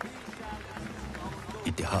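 Film soundtrack: indistinct voices over quiet background music, with a man's voice starting a speech near the end.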